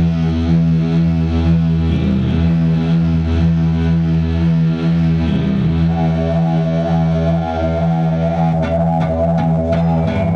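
Live rock band: distorted electric guitar run through effects, holding a steady drone of sustained notes over a heavy low bass. A few drum or cymbal strikes come in near the end.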